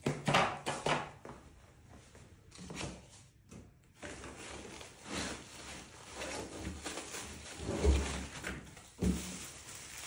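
Rummaging through foam packing in a wooden shipping crate and lifting out a plastic-wrapped part: scattered scuffs and knocks, with two dull thumps near the end.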